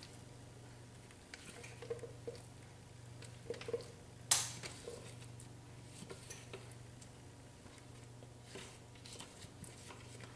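Spatula scraping a thick, moist coconut filling out of a food processor bowl onto a cake, with soft scrapes, squishes and light clicks of the spatula against the bowl; a sharper click about four seconds in is the loudest. A low steady hum lies underneath.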